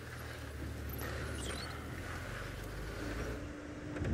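Engine of an open safari game-drive vehicle running steadily as it drives along a dirt track: a low hum, joined by a steady higher note near the end.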